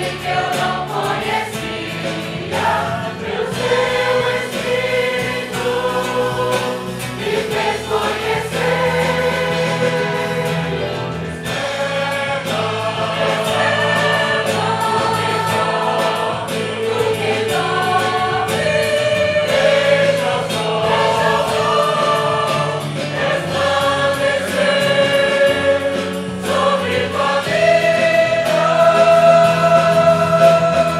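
A group of voices singing a Portuguese worship hymn as a choir, holding long notes over a steady low accompaniment.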